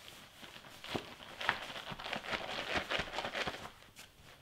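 Sweatshirt fabric rustling and brushing as a pressing pad is slid in between its layers, with a few soft knocks.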